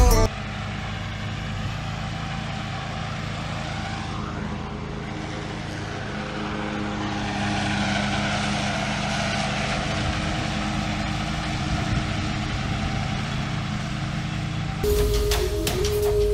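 Walker B19 riding mower's engine running steadily while it mows grass, the hum staying even with a slight rise in level about halfway through. Loud music cuts in near the end.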